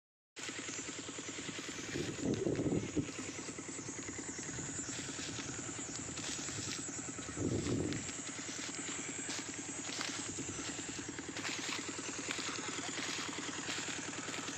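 A small engine running steadily in a drone, with two louder swells, one about two seconds in and one about halfway through.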